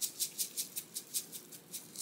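Whole sesame seeds rattling in a plastic shaker, shaken in short, even strokes about five times a second to sprinkle them over food.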